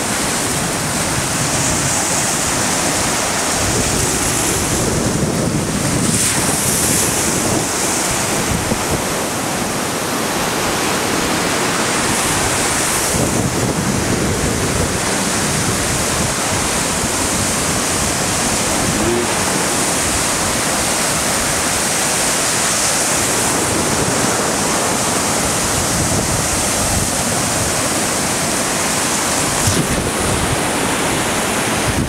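Choppy waves washing steadily onto the shore, with wind buffeting the microphone in gusts.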